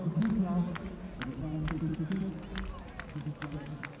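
Voices talking with sharp handclaps about two or three times a second: spectators' rhythmic clapping as a long jumper sets off on her run-up.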